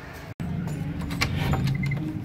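A handful of sharp clicks and a metallic jangle over a steady low hum as a wooden door is opened. The sound cuts out for an instant about a third of a second in.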